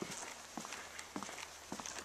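Footsteps on a wooden plank boardwalk: a few faint footfalls over a faint steady background.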